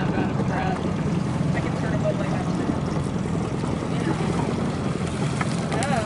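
Small boat motor running steadily at low throttle, a constant low drone.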